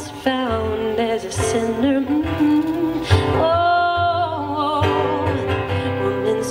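A woman singing a folk song live to her own acoustic guitar, holding one long, wavering note in the middle.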